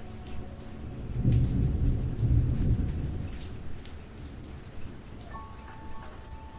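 A low roll of thunder swells about a second in and fades away over the next two to three seconds, over steady rain with scattered drop ticks. A few soft held tones come in near the end.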